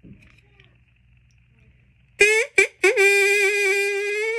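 Homemade drinking-straw whistle blown by mouth: after a quiet start, two short toots about halfway through, then a steady, reedy note held to the end.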